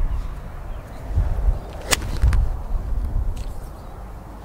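Golf iron striking a ball: one sharp crack about two seconds in. Wind buffets the microphone with a low rumble throughout.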